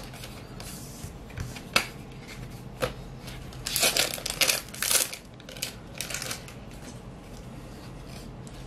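Trading cards being handled and set down on a playmat: a couple of single sharp card flicks, then a run of quick card rustling and sliding from about four to five seconds in, with a shorter run a little later.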